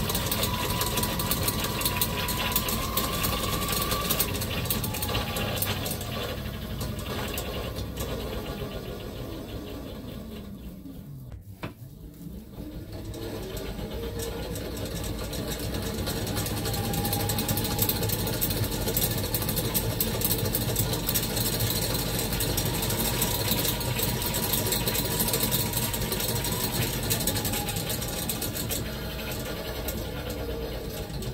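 Hoverboard hub motor spun unloaded by an exercise bike's flywheel, running with a whir and a whine that falls in pitch as it slows almost to a stop about eleven seconds in, then climbs back up as it is spun up again and holds. The motor, which the owner says is on the way out, is making "very funny noises".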